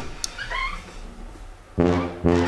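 A puppy gives one short, high whine that rises in pitch about half a second in. Just before the end, loud brass music chords come in.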